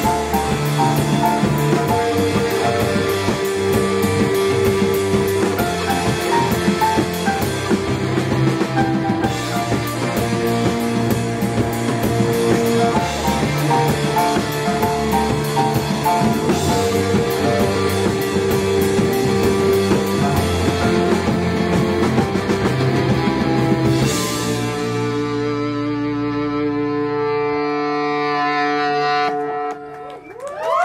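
Indie rock band playing live with a drum kit in an instrumental stretch of the song. About 24 seconds in, the band strikes a final chord that rings out and slowly fades.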